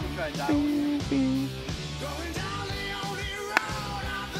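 Background music with a sung vocal line runs throughout. About three and a half seconds in, a single sharp crack of a golf club striking the ball off the tee cuts through it.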